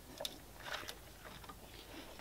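A big dog close by, faintly snuffling and snorting in a few short breaths.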